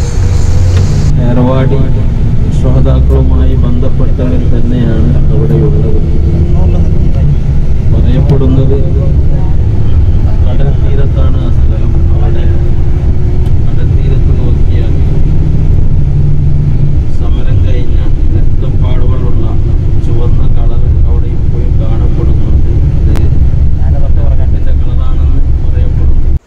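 A bus driving along the road, heard from inside the passenger cabin: a loud, steady low rumble of engine and road noise.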